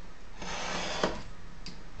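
A utility knife slicing through oak tag pattern card along a steel ruler: a scraping cut starting about half a second in, with a small click about a second in.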